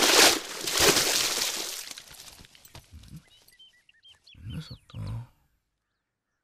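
A loud crash that hits again about a second in and then dies away over about two seconds, followed by a few faint short high chirps and two short low sounds.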